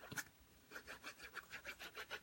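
Faint, quick scratching of a liquid glue bottle's tip dragged back and forth across cardstock, several strokes a second.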